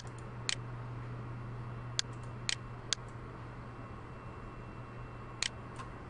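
Computer mouse clicking about six times, single clicks spread out with a quick pair near the end, over a steady low electrical hum.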